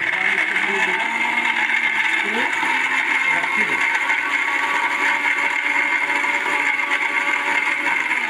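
Philips 750-watt mixer grinder switched on and running steadily, grinding coconut pieces in its steel jar.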